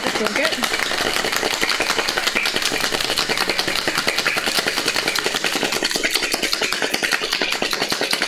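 Ice cubes rattling inside a cocktail shaker that is being shaken hard in a fast, steady rhythm, chilling and mixing the drink. One large cube and two small cubes knock against the tin with each stroke.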